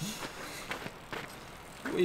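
Faint outdoor background noise with a few soft clicks scattered through it.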